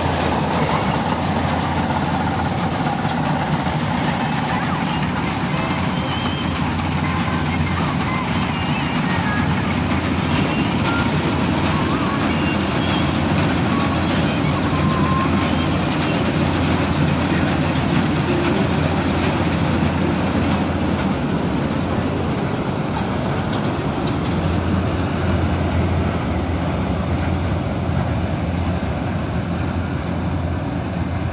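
Malkit 997 combine harvester running steadily as its header cuts standing wheat: a loud, even machine sound with a strong low hum.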